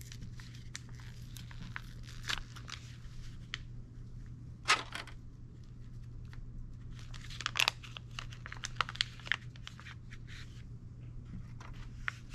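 Gloved hands tearing open and handling the packaging of iodine swab sticks: scattered crinkles and small tearing sounds, loudest about five seconds in and again around seven and a half seconds, over a steady low hum.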